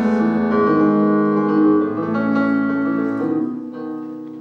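Electronic keyboard on a piano sound playing held chords, changing several times, as a song's introduction; the last chord fades away near the end.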